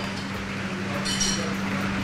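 A steady low hum of kitchen background noise, with a brief high clink about a second in.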